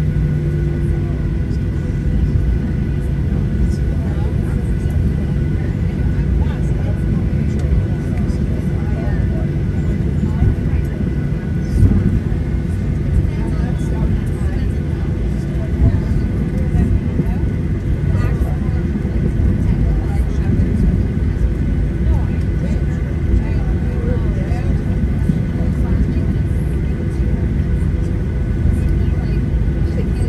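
Boeing 737-800 cabin noise while taxiing: its CFM56 turbofan engines at low taxi power make a steady low rumble, with faint steady tones over it.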